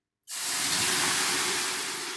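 Water ladled onto the hot stones of a sauna heater, hissing into steam. The hiss starts suddenly just after the start and fades slowly.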